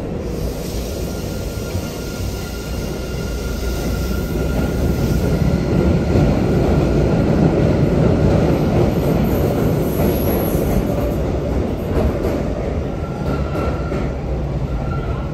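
MBTA Blue Line subway train rumbling beside the platform, the rumble swelling louder through the middle, with a faint steady high-pitched whine over it.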